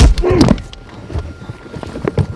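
A man's loud strained grunt over a thud at the start, then quieter scuffling and small knocks as two men struggle inside a car's cabin.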